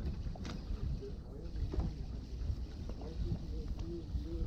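Steady low rumble and water sounds aboard a fishing boat at sea, with a few light knocks.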